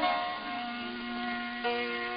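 Instrumental music: a steady chord of several sustained notes held between vocal lines, with one note changing a little past halfway.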